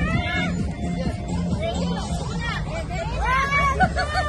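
Background music with a steady low beat under a crowd of overlapping voices talking and calling out, with a burst of high excited voices about three seconds in.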